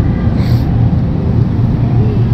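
Steady low rumble with a hum, with no speech.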